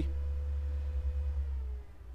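Steady low background hum with a faint, thin steady tone above it that dips slightly in pitch near the end.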